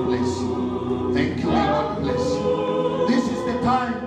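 A small church choir singing a hymn together through microphones, in long held notes.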